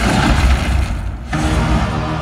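Film soundtrack music with heavy bass, played through cinema speakers and picked up in the theatre. A noisy rush of music and effects fills the first second, dips briefly, then gives way to sustained chords.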